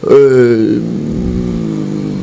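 A man's voice holding one long drawn-out hesitation sound into a microphone, like a prolonged "euh". It dips in pitch at first, then stays on one steady tone for about two seconds.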